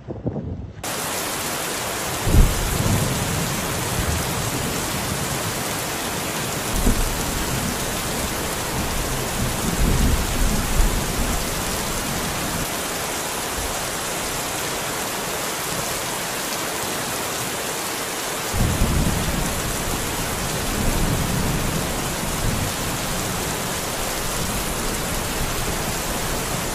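Steady heavy rain with thunder: a sharp clap about two seconds in, then rolling rumbles around seven and ten seconds and again from about eighteen seconds.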